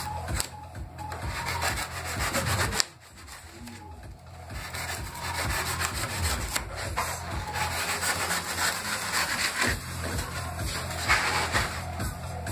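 A hand tool rasping and scraping against expanded polystyrene (styrofoam) as a sculpture is carved and smoothed, in a continuous run of quick rubbing strokes. The strokes ease off for about a second and a half about three seconds in, then resume.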